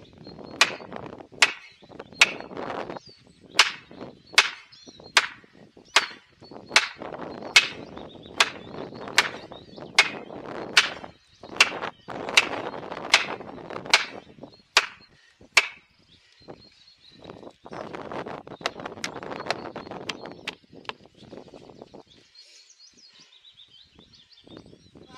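Axe poll striking plastic felling wedges set in the back cut of a large conifer, driving them in to tip the tree: a steady run of about twenty sharp knocks, a little under one a second, stopping about sixteen seconds in, followed by a few seconds of duller rustling noise.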